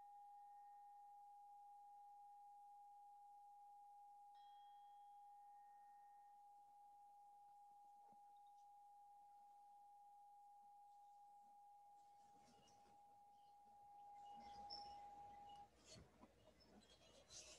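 A meditation bell's single clear tone ringing faintly and steadily. It is struck again about four seconds in and cuts off shortly before the end, with faint clinks near the end.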